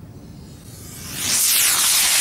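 Potassium-nitrate sugar rocket motor (25 mm, PVC casing) burning: a loud hissing rush swells from about a second in and stays strong. High whistling tones slide down in pitch as the rocket climbs away.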